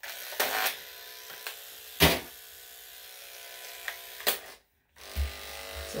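Electric dog-grooming clippers start up and run with a steady buzz while clipping a freshly blow-dried coat. Three sharp knocks come through, the loudest about two seconds in, and the buzz cuts out for about half a second near the end before resuming.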